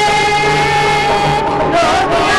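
Worship music with singing: a voice holds one long note over an instrumental backing, and the melody moves on near the end.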